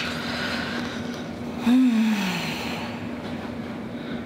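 A person's short, wordless hum or sigh that falls in pitch, about two seconds in, over a steady low background hum.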